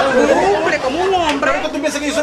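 Only speech: a man and a woman talking over each other in a heated argument in Spanish.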